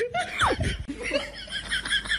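Cartoonish comedy sound effects: a quick falling whistle-like glide about half a second in, then a rapid run of high-pitched, giggle-like chirps.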